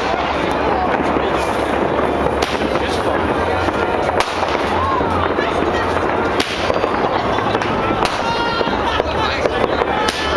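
New Year fireworks going off without a break: a dense crackle broken by several sharp bangs, with people's voices around.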